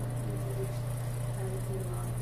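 Steady low electrical hum with a high hiss over the recording's sound system, and a faint, distant voice wavering underneath.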